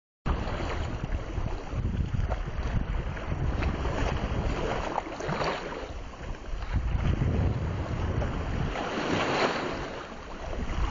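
Wind and sea waves: a continuous rushing, splashing noise that swells and eases every couple of seconds, with wind buffeting the microphone.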